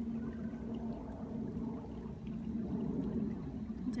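Shallow stream flowing over a gravel bed, a steady sound of running water.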